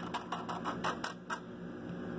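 Pennies clicking against one another as fingers flip through a row of coins laid out on a wooden table: a quick run of about eight sharp clicks that stops about a second and a half in.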